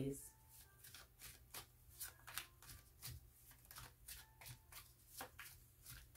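Tarot deck being shuffled by hand: a faint, irregular string of soft card flicks and slaps.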